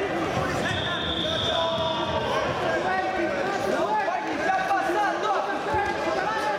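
Several voices shouting and talking over one another in a large echoing sports hall, with crowd chatter underneath. A thin steady high tone sounds for about a second and a half near the start.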